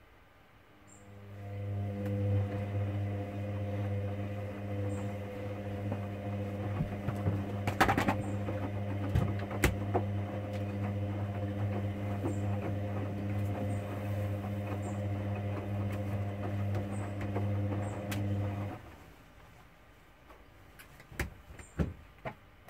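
Hoover Dynamic Next washing machine's drum motor turning the load during the wash: a steady motor hum builds up about a second in, runs evenly with a few sharp clicks from the tumbling load, and cuts off a few seconds before the end as the drum stops.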